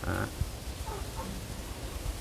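A short spoken "ừ", then faint, even background noise with no distinct event.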